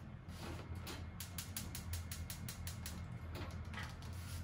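A gas stove's spark igniter clicking rapidly, about eight clicks a second for close to two seconds, over a steady low hum.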